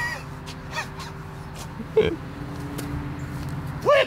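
A man's short, loud grunt at the release of a disc golf drive near the end, with a briefer vocal burst about two seconds in, over a steady low hum.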